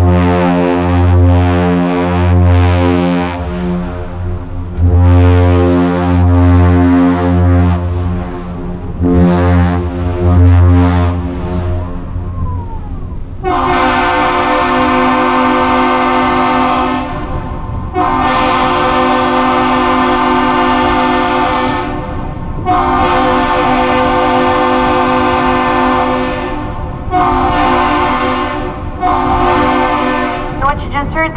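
A Great Lakes freighter's deep ship horn sounding long blasts for about the first twelve seconds, then a higher-pitched horn answering with three long blasts and two short ones: a master salute exchanged between the ship and the Duluth Aerial Lift Bridge.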